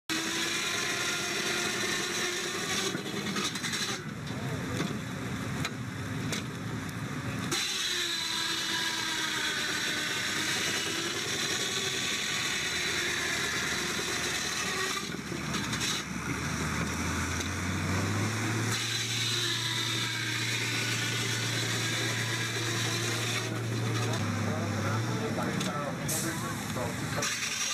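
A belt-driven wood-sawing machine running steadily while a block of wood is cut, with a whine that rises and falls in pitch. A low hum comes in about halfway.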